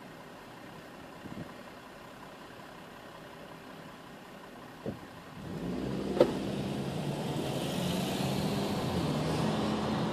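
A car idles quietly at a standstill, heard from inside the cabin, with a couple of faint clicks. About halfway through it pulls away and accelerates, and the engine and road noise rise. A sharp click comes just after it sets off.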